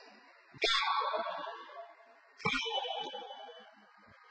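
Two loud shouted counts, about two seconds apart, each ringing on in the echo of a large bare hall.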